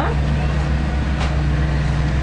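Diesel engine of construction machinery running steadily with a low hum, with one short sharp knock about a second in.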